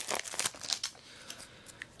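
Foil booster pack wrapper crinkling as a stack of trading cards is slid out of it, the crackle dying down to a few faint ticks about halfway through.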